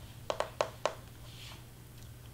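Four quick clicks of a computer mouse within about half a second, over a faint steady low hum.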